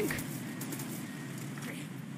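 Anime sound effect of a tank ramming and grinding against a creature's armour: a steady rushing noise.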